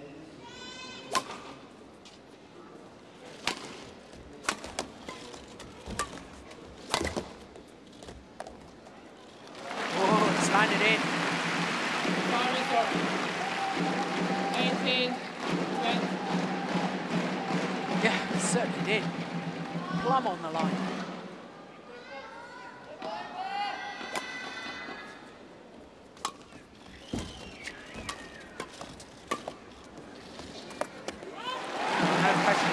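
Badminton rally: sharp racket strikes on the shuttlecock and shoe squeaks on the court, then a crowd cheering and applauding loudly for about ten seconds once the point is won, followed by more squeaks and hits.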